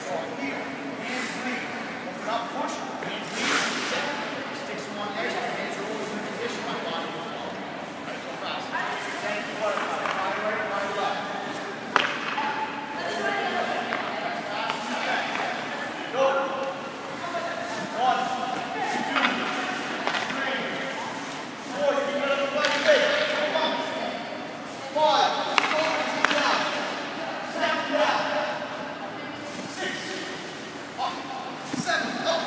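Sharp cracks of hockey pucks struck off a stick and hitting a goalie's pads, several times, with skates scraping on ice and indistinct voices, all echoing in a large indoor rink.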